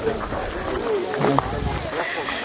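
Indistinct voices of several people talking.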